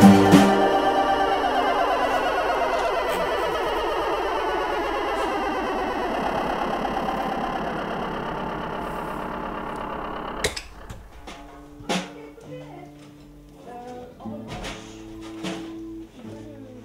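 The band's closing chord stops about a third of a second in. It leaves a long wavering electronic drone from synthesizer and effects pedals, which fades slowly and sinks in pitch until it cuts off sharply about ten seconds in. After that comes a low amplifier hum with a few scattered clicks.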